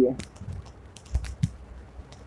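Several light, scattered clicks of a stylus tapping and drawing on a touchscreen, over a faint low background hum.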